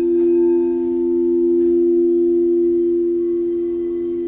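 Crystal singing bowls ringing in two steady, held tones that swell slightly at the start. A fainter, higher tone joins near the end.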